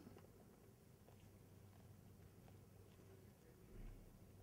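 Near silence: room tone with a faint steady low hum and a soft low thump near the end.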